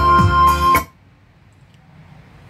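Music playing loudly through a Kenwood NDL-100 mini stereo system's speakers, with a strong steady bass line, cut off abruptly just under a second in as playback is stopped from the front panel; only faint room hiss remains afterwards.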